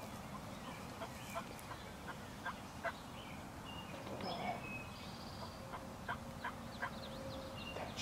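Series of turkey yelps: a run of about six short yelps in the first three seconds, then three more near the end, with songbirds whistling in between.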